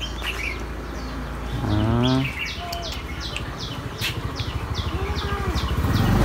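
A small bird chirping repeatedly: short, high, falling chirps about three a second through the second half, over a low steady hum.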